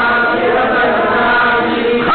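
A group of voices chanting together in one unbroken sung line: a religious chant.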